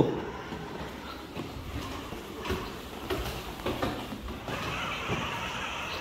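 Children's battery-powered ride-on car moving, its electric motors running and plastic wheels rolling on a tiled floor, with a few faint knocks.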